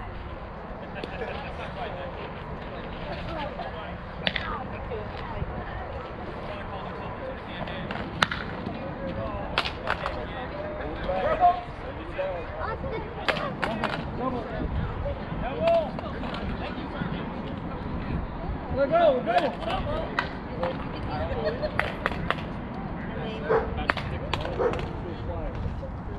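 Softball field sounds: players' voices and shouts carrying across the field, over a steady noise bed, with a dozen or so sharp knocks and claps scattered through it, such as a bat striking the ball or a ball landing in a glove.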